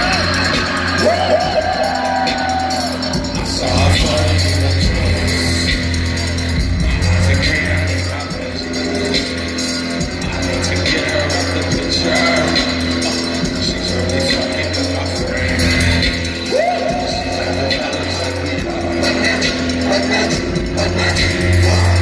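Live hip-hop concert music over a large venue's sound system, with a heavy bass line in long pulses and a synth melody that glides up twice.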